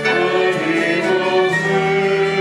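A small vocal group of mixed voices singing together, accompanied by flute and violin, with long held notes.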